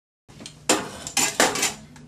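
After a brief dead-silent gap, metal Marcel curling irons clink and clatter several times as they are handled.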